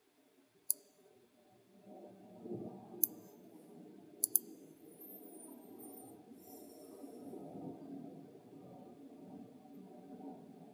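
Computer mouse clicks: one about a second in, another at about three seconds, and a quick double click a little after four seconds, over a faint low background hum.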